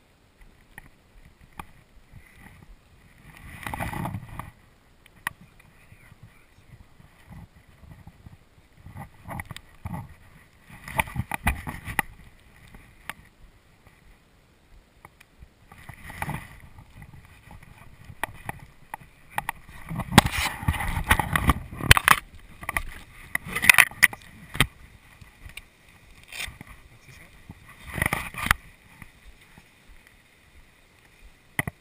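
Rustling and swishing of tall grass and brush as someone walks through dense vegetation, in uneven bursts: one about four seconds in, more around eleven and sixteen seconds, the longest and loudest stretch from about twenty to twenty-four seconds, and a last one near the end.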